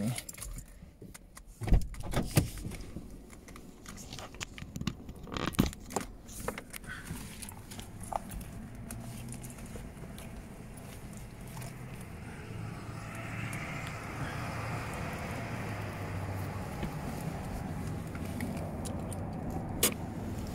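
Handling noises inside a parked car, scattered clicks and knocks, for the first several seconds. From about halfway through, a steady vehicle rumble takes over.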